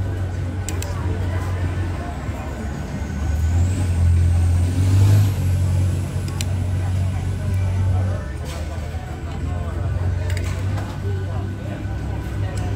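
Low engine rumble that swells about four seconds in and eases back after about eight seconds, under distant voices and a few light clinks.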